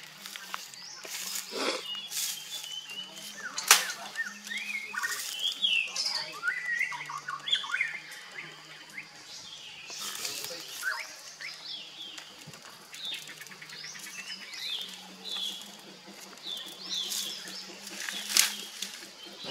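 Small birds chirping in many short, rising and falling calls, over the rustle of leafy branches being pushed through brush. A few sharp cracks stand out, the loudest about four seconds in.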